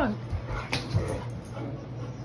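A dog whines briefly in a falling pitch, followed by a couple of light knocks over a steady low hum.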